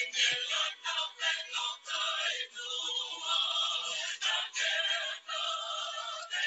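A recorded song with singing, played through a video call's audio, which sounds band-limited.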